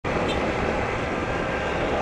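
Small air-cooled single-cylinder motorcycle engine running steadily under way, with road noise.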